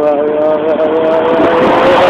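A van drives past close by, its engine and tyre noise swelling to a peak near the end. At the same time a person holds a long, wavering 'ooh' call.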